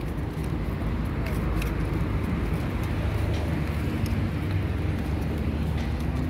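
Steady low rumble of road traffic, with faint voices mixed in.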